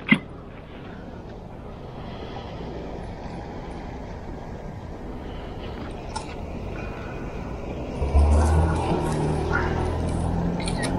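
Road traffic going by on a street, a steady noise that slowly builds. About eight seconds in, a louder, lower engine rumble of a vehicle passing close takes over. A single sharp click comes right at the start.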